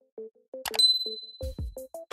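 A mouse-click sound effect followed by a bright notification ding that rings on for about a second, from a subscribe-button animation. Under it runs a quick electronic beat of short plucked notes, with a deep falling thump partway through.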